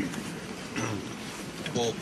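A pause in a man's speech into a handheld microphone, filled with faint background noise from a gathered crowd; his speech resumes near the end.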